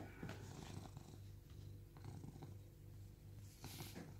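Siamese cat purring softly: a faint low rumble that swells and eases in a steady rhythm with its breathing. A brief rustle near the end.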